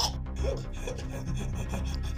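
A person making rasping, strained choking sounds while hands grip his throat in a mock strangling, with a few faint short gasps.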